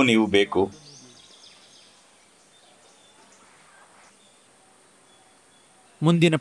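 A man's voice ends a phrase, then a pause filled with faint outdoor night ambience: a steady high-pitched insect drone, with a few faint chirps about a second in.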